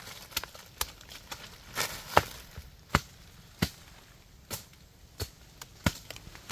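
Hatchet chopping into the base of a very hard cầy (wild almond) tree trunk: about ten sharp blows, spaced unevenly, roughly one every half second to a second.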